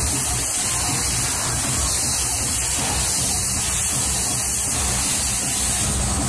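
Dance music from a fairground ride's sound system, partly buried under a steady rushing hiss, with a pulsing bass underneath.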